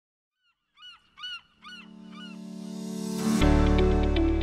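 Intro sting: a bird calls four times, a rising whoosh swells under it, and about three and a half seconds in a deep hit starts the intro music.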